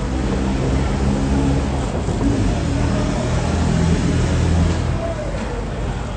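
A motor running with a low, steady rumble that drops away about five seconds in.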